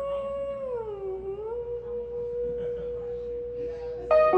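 A woman singing one long held note into a microphone, with almost no accompaniment. The pitch dips and rises again about a second in, then stays level.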